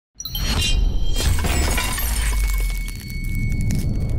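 Broadcast intro sting: a glass-shattering sound effect that starts suddenly, with many shards clinking and high ringing tones, over music and a deep low rumble that eases off about three seconds in.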